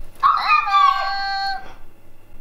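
Electronic Bumba toy, just switched on, playing a sound: a quick upward swoop into a held tone that lasts about a second and a half.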